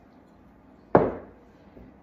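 A glazed ceramic mug set down on a wooden countertop: one sharp knock about a second in, with a short ring fading after it.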